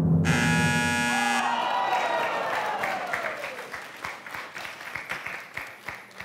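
A game-show sound effect: a drumroll cuts off as a bright, buzzer-like electronic sting sounds for about a second, then a single tone slides downward over about two seconds. Scattered light clapping follows.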